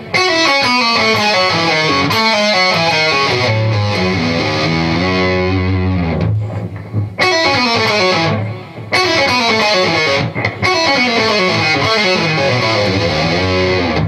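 Distorted electric guitar playing a fast run of single notes that steps downward in pitch. It is played through twice, with a short break about six to seven seconds in.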